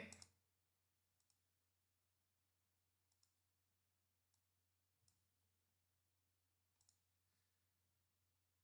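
Near silence with about five faint computer mouse clicks, a second or two apart.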